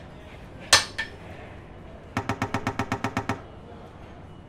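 Sound effect of a hammer striking metal: a ringing clang about a second in, with a lighter second hit just after. About a second later comes a quick, even run of about a dozen metallic clicks, some ten a second.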